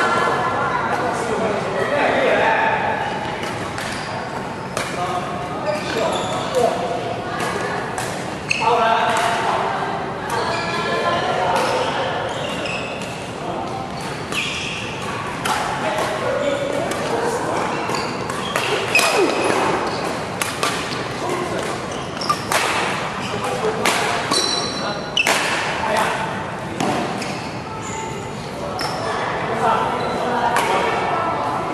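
Badminton rackets striking a shuttlecock during doubles rallies, sharp cracks at irregular intervals echoing in a large hall, with short high squeaks of shoes on the court mat in the later part.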